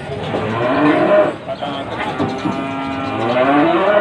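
Cattle mooing: a call in about the first second, then a long held moo through the second half that slowly rises in pitch.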